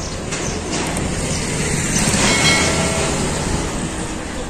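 Street traffic noise: a motor vehicle running and passing, swelling a little past halfway over a low steady hum.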